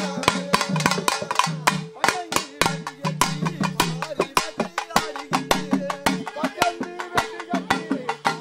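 Processional drumming: double-headed barrel drums beaten with sticks in a fast, dense beat over a steady held tone.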